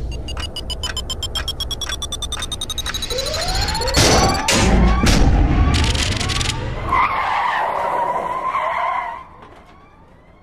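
Logo sting built from sound effects: rapid stopwatch ticking under a slowly rising tone, two heavy hits about four and five seconds in, then a car engine revving up through several gears and a tyre screech that fades out about a second before the end.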